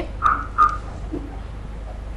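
Open telephone line of a caller coming on air: a steady low hum with two short tones near the start, before the caller speaks.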